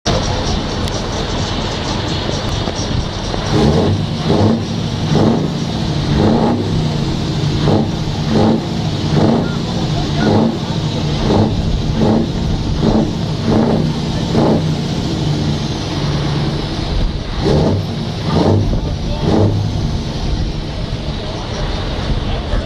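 Big diesel truck engine exhausting through tall vertical stacks, revved in rapid repeated throttle blips, about one to two a second, over a steady idle. The blips stop for a couple of seconds about two-thirds of the way through, then resume.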